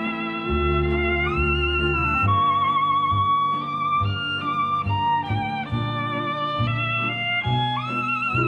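Solo violin playing a slow, sweet melody with wide vibrato, sliding up into notes about a second in and again near the end. A quieter orchestral accompaniment with low bass notes plays underneath.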